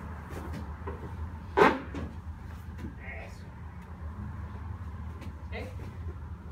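A single sharp slap on a training mat about a second and a half in, as the partner is taken down in the ikkyo arm-lock pin. Faint scuffs and rustles of feet and clothing follow.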